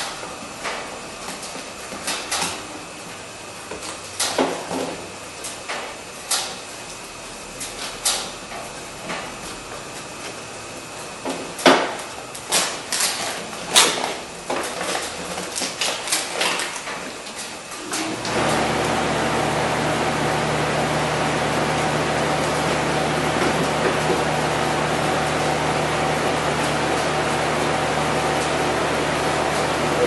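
Scattered knocks and clicks of hands working parts and the plastic sheet against a pickup truck's inner door panel. About two-thirds of the way through, a steady machine hum with a low drone starts abruptly and keeps going, louder than the handling sounds.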